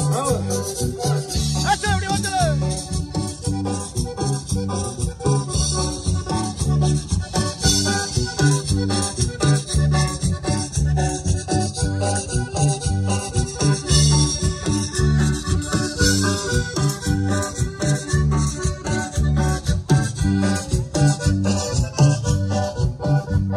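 Latin dance music played loud over party loudspeakers, with a steady, even beat.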